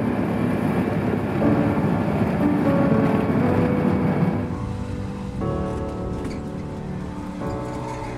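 Background music with sustained notes, laid over the noisy rumble of a moving three-wheeler taxi; the vehicle noise drops away about halfway through, leaving the music on its own.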